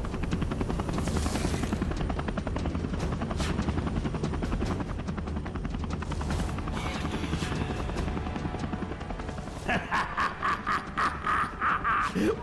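Cartoon helicopter sound effect: a fast, steady rotor chop with a low engine hum, under background music. Near the end a quick, regular pulsing sound joins in.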